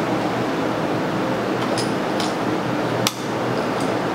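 Steady whoosh of fans running, with a couple of faint clicks a little under two seconds in and one sharp click about three seconds in, from the laser engraver's power button and key switch being switched off.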